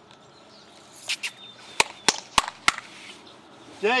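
Four sharp, evenly spaced clicks about a third of a second apart, just after a brief rustle near the microphone.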